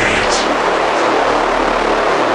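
Outro of a dark techno track: a steady, dense noisy drone like a rumbling hiss, with no beat.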